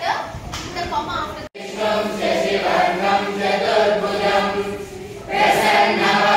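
A class of schoolboys chanting a prayer together in unison, with sustained pitches. The chanting starts after an abrupt cut about a second and a half in.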